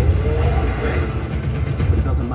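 Action-movie trailer sound effects: a heavy, continuous low rumble with a sharp crash at the very start, as debris bursts out of a building.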